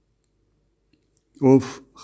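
Dead silence for over a second, then a faint click and a man's voice reading aloud in Armenian, starting a word about one and a half seconds in.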